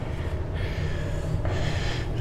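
A man breathing as he climbs a metal spiral staircase, over a steady low rumble.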